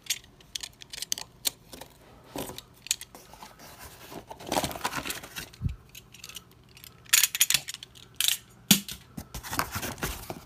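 Corrugated cardboard shipping box being cut open and its flaps pulled apart: irregular scrapes, rustles and sharp clicks of cardboard and tape, in bursts that grow louder in the second half.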